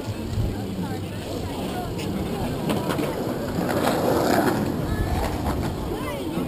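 Bicycle rolling along a concrete boardwalk, heard from a camera on the handlebars: a steady rumble of tyres and wind on the microphone, with a few light clicks and passersby's voices in the background.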